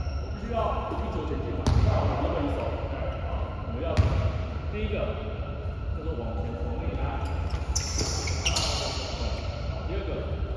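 A basketball bouncing on a hardwood gym floor, with two loud bounces about 2 and 4 seconds in and a few softer ones later, over players talking.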